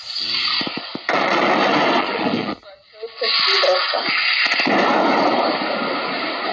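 CB radio static from an SDR receiver in narrow-band FM while it is tuned across channels near 27 MHz: steady loud hiss with brief garbled snatches of voices. The hiss drops out for about half a second midway, then returns.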